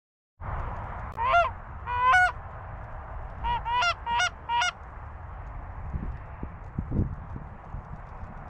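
Loud, close Canada goose honks: two single honks, then a quick run of four. A steady wind rumble on the microphone runs underneath, with a few low thumps near the end.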